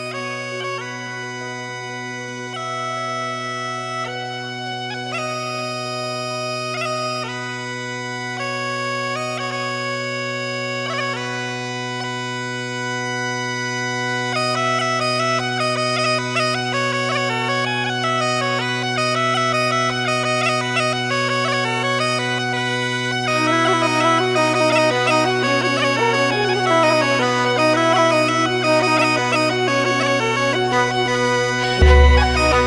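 Galician gaita (bagpipe) playing over its steady drone: a slow melody of long held notes, moving to a quicker, ornamented tune about halfway through. Near the end it grows louder, as a second, lower melody line joins.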